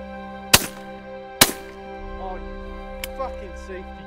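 Two shotgun shots fired at geese flying overhead, sharp and loud, about a second apart.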